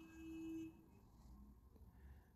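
A short, faint steady tone lasting about half a second, then near silence.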